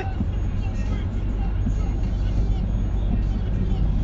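Steady low rumble of a running car, heard from inside its cabin.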